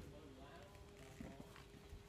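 Very quiet: faint distant voices over a steady low hum, with a couple of soft clicks as the spiky husk of a durian is pried apart by gloved hands.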